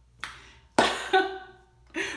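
Finger snaps: a sharp snap about a quarter second in, then a louder one just before the middle, joined by a short sung vocal sound.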